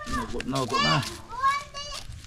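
Voices only: an adult speaking briefly, then a child calling out in a high voice in the second half.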